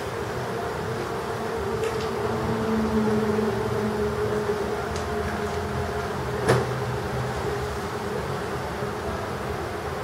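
Steady mechanical hum with a held low tone, and a single sharp click about six and a half seconds in.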